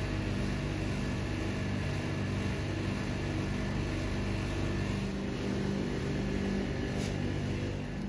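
A steady low mechanical hum with a constant pitch, with one faint tick about seven seconds in.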